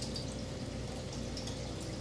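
Steady background room tone: a low hum with an even hiss and one faint steady tone, with no distinct sounds.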